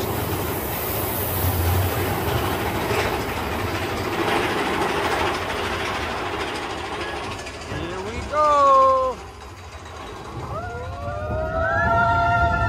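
Mine-train roller coaster cars running along the track with a steady rumble and rattle. About eight seconds in, a rider lets out one short, loud, rising whoop, and from about ten seconds several riders hold long whoops together.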